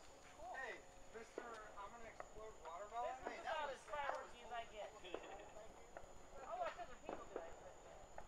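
Faint, indistinct voices of people talking in the background, with a thin steady high-pitched whine underneath.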